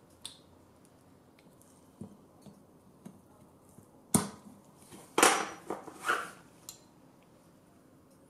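Telescope mount parts being handled and fitted together: a few light clicks, then a run of sharp knocks and clunks of the plastic housing and metal plate from about four to seven seconds in, the loudest a little after five seconds.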